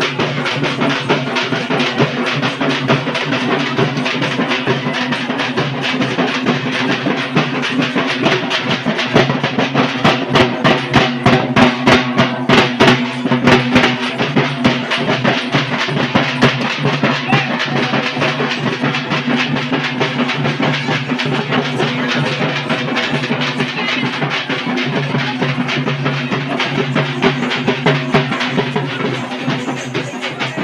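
Dappu frame drums beaten with sticks in a fast, driving rhythm by a group of drummers, with louder, sharper strokes from about ten to fourteen seconds in. A steady low drone runs underneath.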